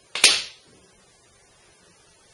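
A single sharp clack, a quarter second in and fading within half a second: the metal cylinder electrode and pen-shaped detecting probe being set down on the tabletop.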